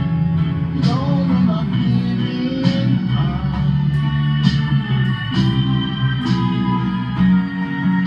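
Electric guitar playing an instrumental passage over a backing track with bass and a steady beat, with a sharp stroke marking the beat about every two seconds.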